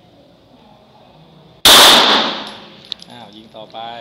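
One loud 9 mm pistol shot about one and a half seconds in, its echo off the covered range dying away over about a second, followed by a small sharp metallic tick.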